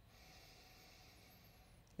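One long, faint sniff through the nose at a glass of whisky, in near silence.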